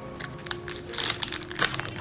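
Crinkling and rustling of a sheet of waterproof label stickers being handled: a quick run of small crackles.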